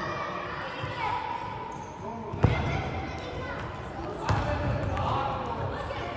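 Futsal ball struck hard on an indoor court, two sharp kicks ringing in the large hall's echo: the louder about two and a half seconds in, another about four seconds in.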